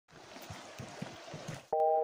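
Faint creek water running, with a few soft low thumps. Near the end a synthesizer chord of music starts suddenly.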